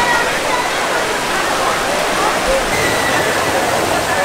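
Steady rushing of water over small river cascades into a pool, with the chatter of a crowd of bathers in the background.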